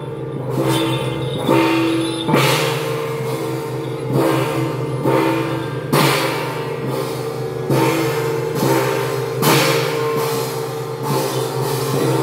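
Taiwanese temple-troupe percussion: brass hand gongs struck in a slow beat, roughly once a second, each stroke ringing on between hits.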